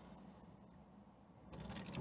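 Near silence: quiet room tone inside a parked car, with a faint rustling noise rising in the last half second.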